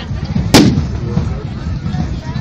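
A single loud bang about half a second in, sharp with a brief ring-out, from the mock battle, over crowd chatter.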